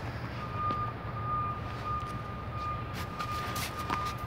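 A vehicle's reversing alarm beeping, a single steady high pitch repeating in short beeps, over the low rumble of traffic.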